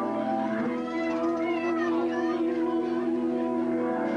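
Live band music from an old VHS tape recording: sustained chords under a long held, wavering note, with a few high gliding notes in the middle. The held note ends just before the close.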